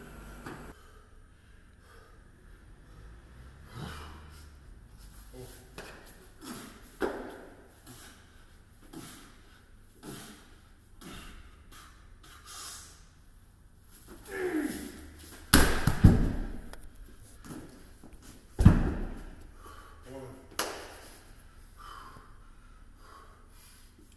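A 125 kg strongman dumbbell being pressed overhead and dropped: a loud, deep double thud as it hits the floor about two-thirds of the way in, another heavy thud a few seconds later, with a lifter's shout and grunting just before the first drop.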